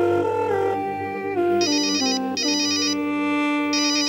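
A phone ringing with an electronic ringtone: short bursts of a rapid high trill recur a few times over sustained notes that step down in pitch.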